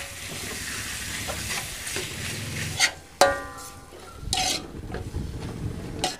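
Chicken gizzards frying in butter and tomato paste in an aluminium wok, sizzling as they are stirred with a metal spoon. About three seconds in, the spoon strikes the wok with a brief metallic ring, and a second short scrape follows a second later.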